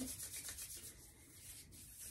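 Bare palms rubbing briskly together in a fast run of soft, dry swishes, strongest at first, easing off in the middle and picking up again near the end.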